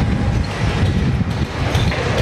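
Ride noise from an open carriage rolling along a city street: a loud, dense, steady low rumble.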